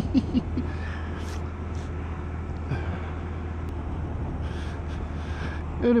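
Honda Monkey 125's single-cylinder four-stroke engine running steadily at cruising speed, with a constant low drone under an even rush of wind and road noise.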